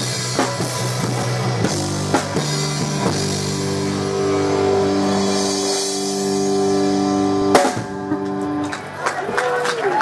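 Live rock band with a drum kit playing the end of a song: drums and cymbals under a long held chord, then a loud final crash a little past seven seconds, after which the music falls away.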